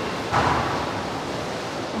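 Steady rushing of running water, an even hiss with no distinct events, swelling slightly about half a second in.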